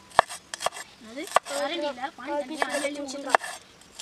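Steel knife chopping shallots on a wooden cutting board: about six sharp, irregularly spaced blade strikes against the board. A voice sounds in the background through the middle of the chopping.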